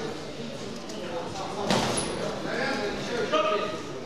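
Men's voices calling out over an amateur boxing bout, with one sharp slap of a gloved punch landing a little under two seconds in.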